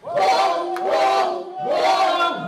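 Live soul vocals: a woman belting two long, held sung phrases through a PA with crowd voices, the drums and band largely dropped out.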